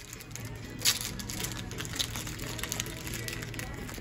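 Foil Pokémon booster packs crinkling and rustling as they are handled and shaken, with a sharper crinkle about a second in.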